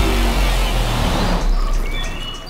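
An SUV driving along a dirt forest track, a deep engine rumble with road noise that fades away near the end.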